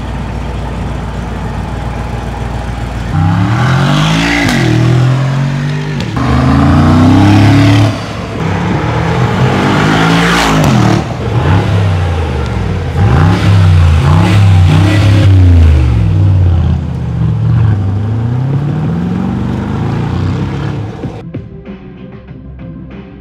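Mercedes-AMG G63's twin-turbo V8 idling, then revved repeatedly from about three seconds in, its pitch climbing and falling again and again. It is loud, and fades near the end.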